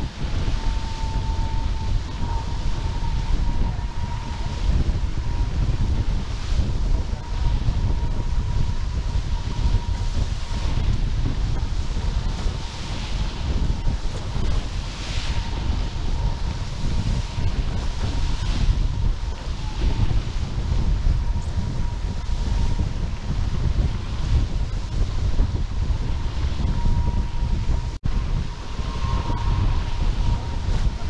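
Wind buffeting the onboard camera's microphone on a fast-sailing F18 catamaran, with water rushing and hissing past the hulls in surges. A thin, steady high hum runs underneath throughout.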